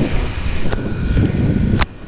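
Wind buffeting on a helmet microphone over the Honda C90 Cub's small single-cylinder engine running at road speed. A sharp click comes near the end, after which the sound drops quieter.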